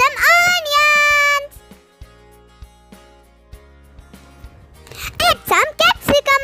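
A child's voice drawing out the word "some" for over a second, then more child speech near the end, over quiet background music with a steady low bass.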